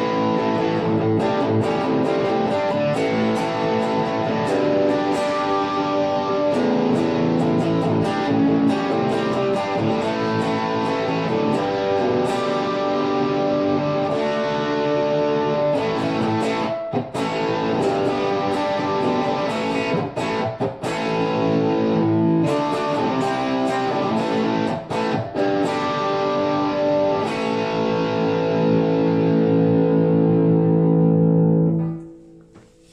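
Electric guitar on its bridge pickup, played through the Boss GT-1000's OD-1 overdrive model and heard through studio monitors: a run of lightly overdriven riffs and chords with a few short breaks, ending on a long held chord.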